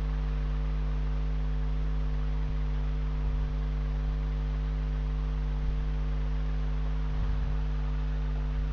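A steady electrical hum with a low buzzing note and its overtones over a faint hiss, holding unchanged throughout.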